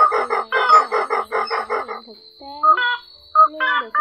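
White-breasted waterhen calls from a lure recording, a rapid even series of pitched notes, about seven a second, that stops about two seconds in, with a man's voice talking over it.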